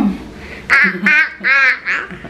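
A toddler's high-pitched squealing laughter, four short wavering squeals in quick succession about a second in.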